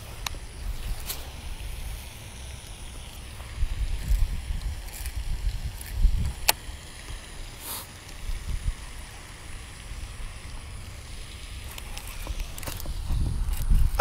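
Wind buffeting the microphone: a low rumble that swells and fades in gusts, with a few sharp clicks.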